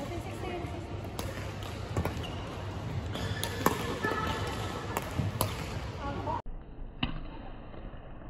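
Badminton rackets striking a shuttlecock in a rally: sharp cracks about once a second over background voices. The sound drops away abruptly about six and a half seconds in, with one more hit after.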